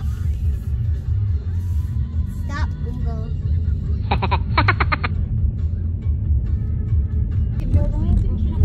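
Car cabin road and engine rumble while driving, with background music over it. About four seconds in, a rapid pulsing sound of roughly eight beats lasts about a second.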